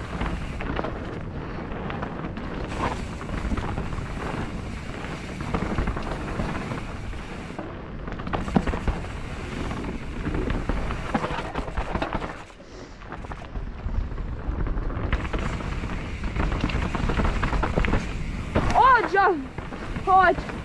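2019 YT Capra mountain bike descending fast on singletrack, heard from a GoPro on the rider. Tyres roll over packed dirt, rocks and a stretch of wooden planking, with frequent rattling knocks from the bike and wind buffeting the microphone. The noise drops briefly about twelve seconds in.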